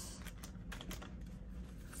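A few faint clicks and rustles of hands handling plastic cash envelopes in a ring binder.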